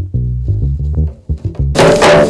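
Four-string electric bass guitar plucking a run of separate low notes. Near the end a sudden, much louder crashing burst of music cuts in over it.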